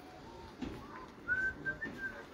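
A few short whistled notes, stepping up in pitch in the second half.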